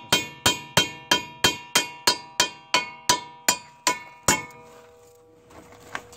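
Hammer striking a wheel stud in a Mazda Miata's wheel hub to drive the broken stud out: about a dozen quick, even blows, roughly three a second, each leaving the steel hub ringing. The blows stop a little past halfway and the ringing dies away.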